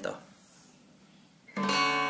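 A quiet pause, then about one and a half seconds in a single downstroke strum on an acoustic guitar, its chord left ringing.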